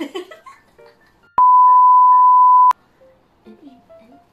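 A loud, steady, single-pitched electronic bleep tone, just over a second long, that cuts in and out abruptly about a second and a half in. It is preceded by a burst of laughter and followed by soft background music.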